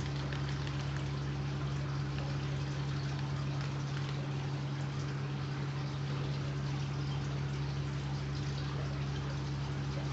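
Aquarium filtration running steadily: water splashing and bubbling at the surface of an open display tank, over a constant low hum from the pump.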